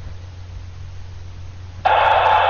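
Static hiss suddenly bursts from a Polmar DB-32 handheld VHF/UHF transceiver's speaker near the end, loud and even: the monitor key has been pressed, opening the squelch.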